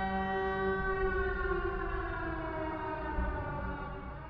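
Air-raid siren sound effect: a held wail that stays at one pitch for about a second and then slowly winds down.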